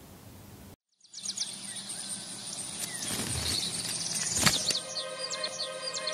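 After a second of near silence, birds chirp over a steady outdoor hiss, with a rising whoosh and a sharp hit around the middle. Sustained music chords come in near the end.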